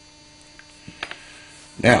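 A few faint clicks of small metal collet parts being handled and fitted by hand, over a steady mains hum.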